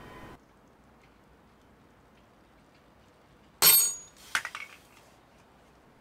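A 3D-printed carbon-fibre PC blend test specimen snapping under load on a crane scale's hook: one sharp crack about three and a half seconds in, with the steel hooks clinking and ringing, then a few lighter clinks.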